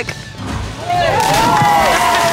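Drawn-out shouted whoops from more than one voice, starting about a second in and held to the end, over background music.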